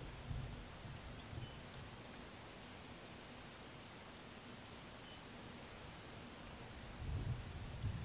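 Wind buffeting an outdoor microphone: a steady hiss with low rumbling gusts near the start and again from about seven seconds in.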